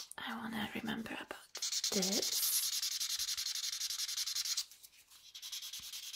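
Marker pen scribbling rapidly back and forth on paper held on a clipboard, a steady scratchy rasp that runs for about three seconds and stops sharply before the end.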